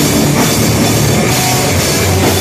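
Live pop-punk band playing loud, distorted electric guitars, bass and a full drum kit, heard through a phone microphone close to the stage.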